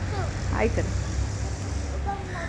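A child's short call, gliding in pitch about half a second in, over a steady low rumble.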